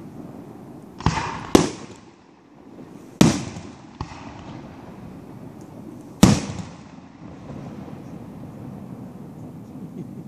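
Aerial firework shells bursting overhead: four loud sharp reports, about a second in, half a second later, past three seconds and past six seconds, with a weaker one near four seconds, each trailing off in an echo.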